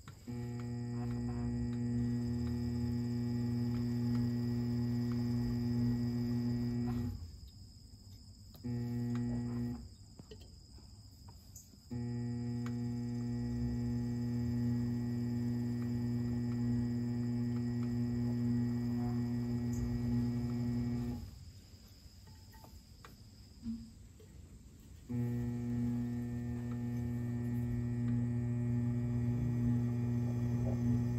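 Electric potter's wheel motor humming steadily as the wheel head spins, cutting out and starting up again several times: off about seven seconds in with a brief one-second run, back on at twelve seconds, off again around twenty-one seconds and on once more about four seconds later.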